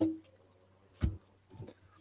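Tarot cards being gathered and cut by hand on a table: two short knocks, one at the start and one about a second in, with fainter ticks of card handling.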